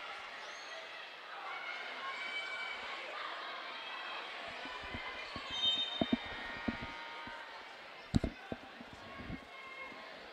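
Gym crowd chatter, then from about halfway in a run of short thuds of a basketball bouncing and feet on the hardwood court, with one sharper knock near the end.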